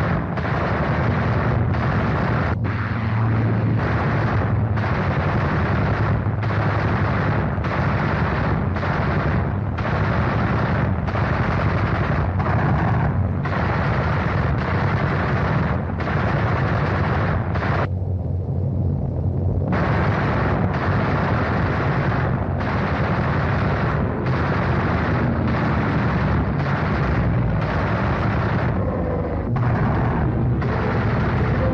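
Aircraft cannon and machine-gun fire in long rapid bursts over a steady low engine drone, as strike aircraft strafe shipping. The firing breaks off for about two seconds around eighteen seconds in while the drone carries on.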